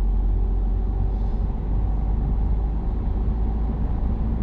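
Cabin noise of a Peugeot car with a manual gearbox, accelerating gently on an urban road: a steady low engine and road rumble heard from inside, whose engine hum shifts slightly about three seconds in.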